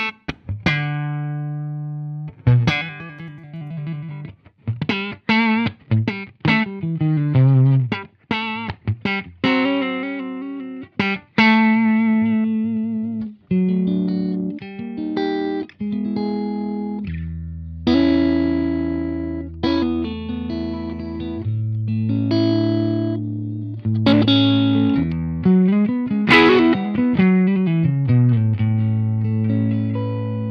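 Electric guitar played through a Fender Deluxe Reverb valve amp: a phrase of picked notes and chords, some held and left ringing. The amp is dialled down to around five, where its clean tone just starts to break up.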